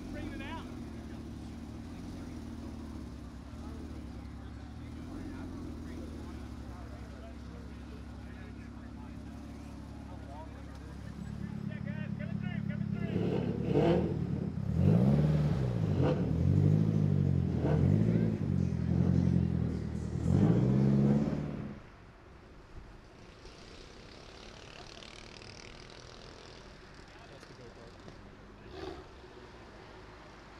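A car engine running at low, steady revs. About twelve seconds in, a louder engine from a Nissan S13 coupe driving past is revved repeatedly, about six quick rises and falls over seven seconds, and it drops away suddenly near 22 seconds.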